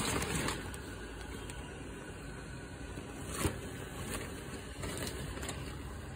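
Steady low hum of an inflatable Halloween decoration's electric blower fan running, with a brief knock from handling about three and a half seconds in.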